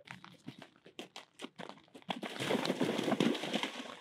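A horse's hoofbeats at canter, then, about halfway through, loud splashing as the horse gallops through shallow water before jumping out over a log.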